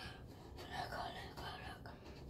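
A young girl whispering faintly.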